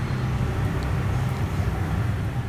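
A steady low mechanical drone, like an engine or motor running, fills the background.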